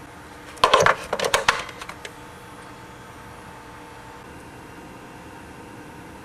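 A rechargeable battery being pushed into a slot of a multi-bay battery charger: a quick cluster of hard clicks and knocks, starting under a second in and lasting about a second and a half.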